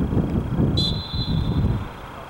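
Wind buffeting the camera microphone: a loud, uneven low rumble that eases just before the end. A brief thin high tone sounds about a second in.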